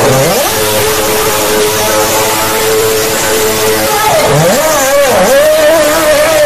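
Red Bull Formula One car's V8 engine revving hard with a high-pitched scream while the car spins on the tarmac. About four seconds in the pitch dips and climbs again a few times, then holds high.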